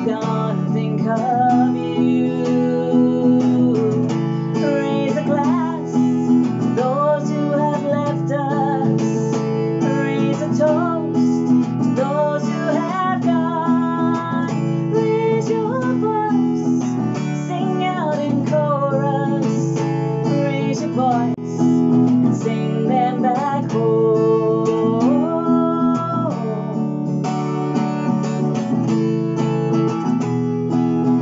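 A woman singing with a strummed acoustic guitar, capo on the neck. Near the end the voice drops out and the guitar carries on alone.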